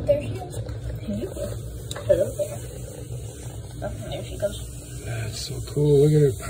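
Brief, quiet murmurs and fragments of voices over a steady low room hum, with a louder voice starting near the end. The wasps themselves are not audible through the glass of the enclosure.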